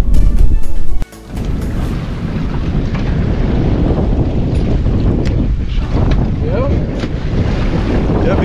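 Loud low wind rumble on the microphone that cuts off abruptly about a second in. Then steady wind noise and sea sounds on an open boat.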